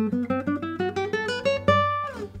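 Nylon-string classical guitar playing a quick run of single plucked notes, about six a second, climbing steadily in pitch and ending on a held higher note near the end.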